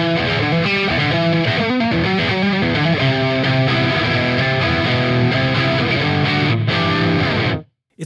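PRS Silver Sky electric guitar playing a continuous rock riff through an amp. The riff cuts off suddenly near the end.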